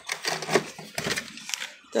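A few light, irregular clicks and knocks of small objects and packaging being handled and set down in a tray.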